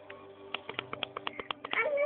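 Rapid small clicks and knocks throughout. Near the end comes a loud, high cry that rises in pitch like a meow.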